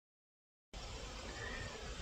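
Digital silence, then from under a second in a faint steady hiss of room tone.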